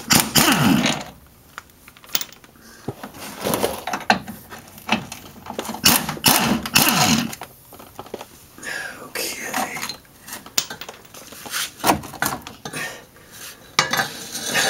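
Metallic clanking and clinking as a steel stabilizer bar and its clamp bolts are worked loose under a car. A short burst from a pneumatic impact wrench comes at the start.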